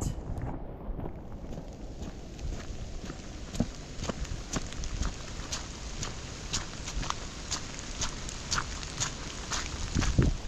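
Footsteps on a wet forest path, sharp steps about two a second, over a steady low rumble.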